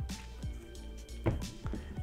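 Quiet background music with steady held notes, with a couple of brief soft sounds over it about two-thirds of the way in.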